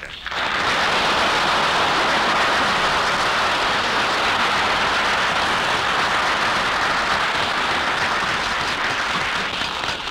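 Live radio studio audience applauding, a dense, steady ovation lasting about ten seconds that eases off near the end.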